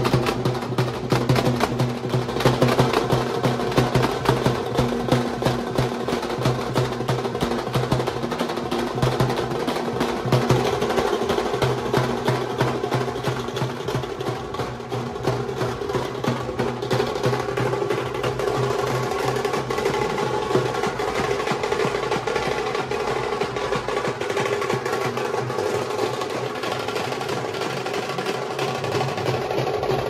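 Procession drummers beating shoulder-slung stick drums in a fast, unbroken rhythm, with a steady low hum underneath.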